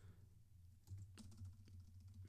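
Faint computer keyboard keystrokes: a few scattered key presses from about a second in, as typed text in a code cell is deleted.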